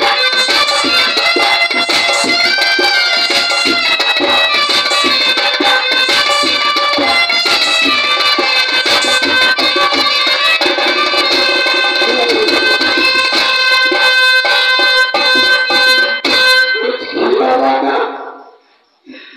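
Live Indian folk dance music: a shehnai plays a held, wailing melody over keyboard and a steady hand-drum beat. The music breaks off suddenly about a second and a half before the end.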